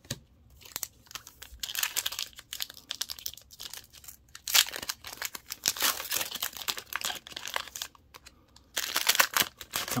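Foil booster pack wrapper crinkling in irregular bursts as it is handled and torn open, with a last burst of crinkling near the end.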